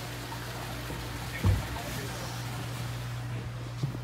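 A heavy thump about one and a half seconds in as the stiff lid of a deck ice-maker bin is forced open, with a lighter knock near the end, over a steady low hum.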